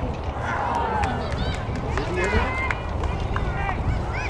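Shouts and calls of players and spectators across an outdoor soccer field, carried over a heavy, steady wind rumble on the microphone, with a few sharp knocks scattered through.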